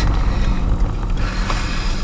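Car driving, its engine and road rumble heard from inside the cabin, with a hiss that picks up about a second in.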